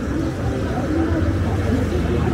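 City street ambience at a busy crossing: a low rumble of road traffic that grows about half a second in, mixed with the voices of pedestrians talking.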